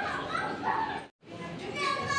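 Background voices of visitors, with a brief gap about a second in; after the gap come high-pitched, drawn-out calls typical of children's voices.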